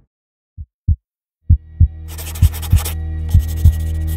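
Heartbeat sound effect in a soundtrack: paired lub-dub thumps about once a second over a steady low drone, starting after two single thumps. A brief rush of noise comes about two seconds in.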